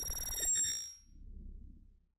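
Video transition sound effect: a bright chime ringing over a low whoosh, dying away about a second in, then a faint low rumble.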